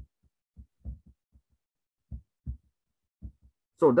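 About ten soft, low thumps at uneven spacing, some in quick pairs: a stylus tapping on a tablet as someone writes by hand.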